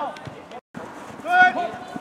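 A voice shouting across an outdoor football pitch, with one loud drawn-out call about one and a half seconds in. The sound drops out completely for a moment just over half a second in.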